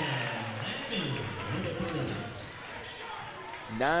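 Basketball game sounds in a gym: a ball bouncing on the hardwood court, with crowd voices in the background.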